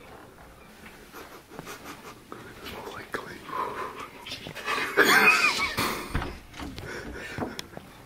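Out-of-breath young men panting and whispering, with a loud burst of stifled laughter about five seconds in.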